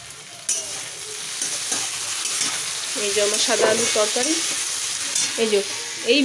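Diced potatoes sizzling in hot oil in a wok while a spatula stirs them.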